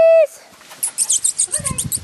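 German shepherd puppy yelping: a loud, high, held cry that cuts off suddenly just after the start. About a second later comes a quick run of very high-pitched squeaks, and a rustling noise comes in near the end.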